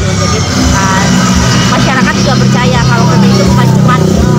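A motor vehicle engine running steadily close by, a continuous low hum, with voices over it.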